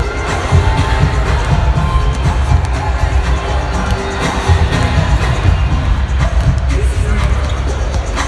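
Arena sound-system music with heavy bass, over crowd chatter and basketballs bouncing on the hardwood court.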